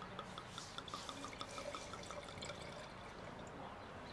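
White wine being poured from a bottle into a stemmed wine glass: a faint, quick run of glugs, about five a second.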